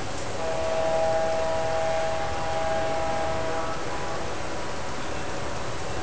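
Diesel horn sound effect from a model train locomotive's sound system: one multi-tone chord held for about three seconds, starting just after the start, over a steady noisy background.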